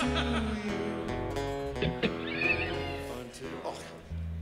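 Live rock band with electric guitars, bass and drums playing a song, with a high wavering glide standing out above the band about two seconds in. The music thins out and drops in level near the end.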